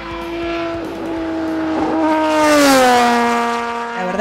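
Top Race V6 race car passing by at speed, its V6 engine holding a steady note on approach and then dropping in pitch as it goes past, loudest about two and a half seconds in.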